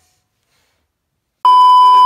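Dead silence, then about one and a half seconds in a loud, steady electronic test-tone beep of the kind played over TV colour bars, starting abruptly.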